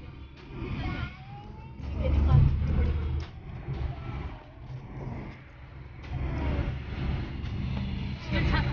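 Car cabin noise while driving on a highway: a steady low rumble of engine and road, swelling briefly about two seconds in, with faint voices in the car.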